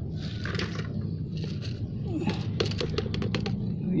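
Thin plastic bottle pot crinkling as it is squeezed and twisted to free a water spinach root ball and its soil, with a few rustles at first and then a quick run of sharp crackles past the middle.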